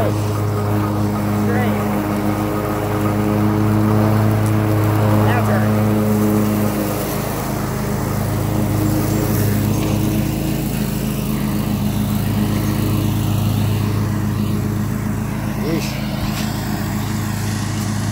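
Riding lawn mower engine running at a steady speed as the mower is driven across the lawn, a continuous low hum.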